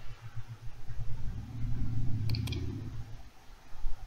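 Two quick computer mouse clicks a little over two seconds in, advancing a presentation slide, over a low background rumble.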